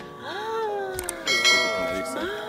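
Subscribe-button animation sound effect: a short mouse click about a second in, then a bright bell ding whose tones ring on to the end.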